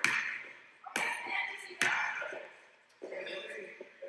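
Basketball bouncing on an indoor court floor: three sharp thuds about a second apart, each ringing out in the echo of a large gym, with faint voices in the background.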